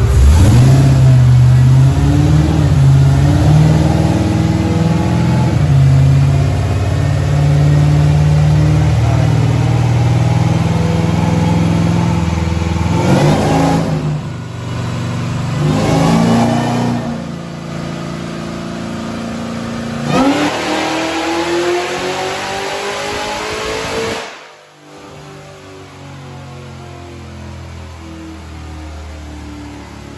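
Supercharged engine of a square-body Chevrolet Silverado short-bed pickup run on a chassis dyno. It runs loud at high revs for about the first half, drops off, revs again, then climbs in a rising sweep that cuts off sharply about three-quarters of the way through and settles to idle.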